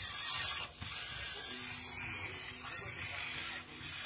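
Enabot EBO SE robot's small drive motors whirring as it rolls across a tile floor, with a faint steady hum in the middle and two brief pauses.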